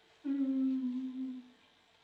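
A person humming one long, steady note of about a second, falling slightly in pitch at the end.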